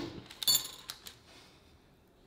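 A metal spoon clinks against a glass mixing bowl about half a second in, with a short ringing tone, followed by a lighter tap; otherwise only faint handling of the food mixture.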